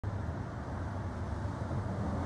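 Street traffic noise: a steady low rumble of cars going by.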